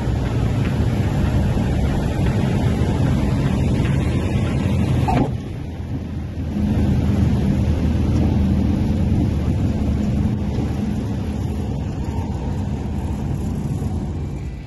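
Engine and propeller of the INPAER Stallion light aircraft with rushing air, heard from inside the cockpit while landing and rolling out on the runway. The sound dips suddenly about five seconds in, then settles into a steady lower hum.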